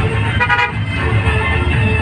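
A vehicle horn sounds one short toot about half a second in, over a steady low traffic rumble.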